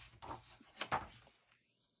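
A few short, soft knocks and rustles in the first second: a hardcover picture book being handled and its page turned.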